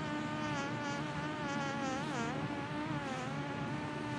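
Mosquito whining: a thin, steady buzz that wavers slightly in pitch and dips briefly about two seconds in.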